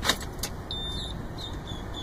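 A truck's ignition key being turned on in the switch, with a sharp click at once and another about half a second later, then a few faint, short high beeps from the dashboard. The engine is not yet started.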